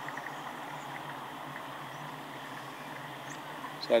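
Steady outdoor background with faint insect chirping, heard in a pause between words.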